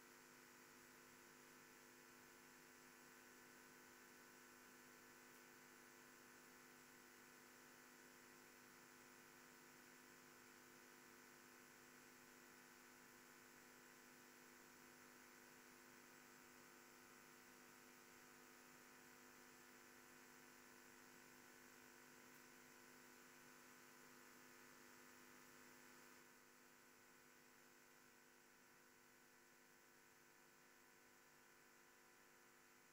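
Near silence: a faint, steady electrical hum with light hiss, dropping slightly in level near the end.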